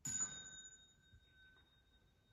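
A single strike on a small metal chime, ringing with a clear high tone that slowly fades away over the next couple of seconds.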